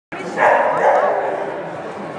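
Dog barking, a short run of loud barks in the first second or so, with people's voices in the background.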